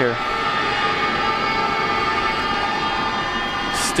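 Stadium background noise: a steady crowd hum with held, horn-like tones sounding throughout.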